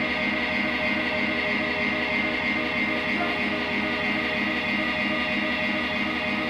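Amplified electric guitar holding a sustained droning chord, with a fast regular pulsing in its low notes and no drums playing.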